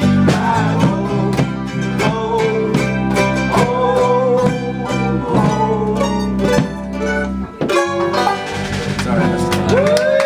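A loose band of strummed guitars and electric bass with group singing plays loudly. The full sound cuts off suddenly about seven and a half seconds in, leaving a few ringing notes, and voices start whooping near the end.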